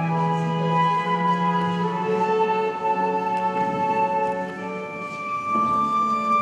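Live trio of flute, violin and digital piano playing a slow classical-style piece, with long held notes that change about once a second.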